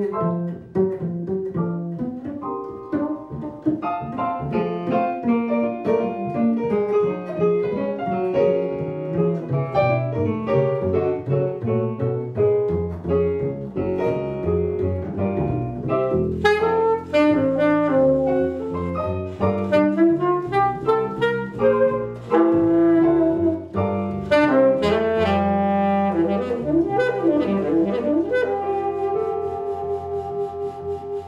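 Small jazz combo playing: saxophone over a Roland V-Piano digital piano and a plucked upright double bass. The saxophone comes in partway through and leads, holding a long note near the end.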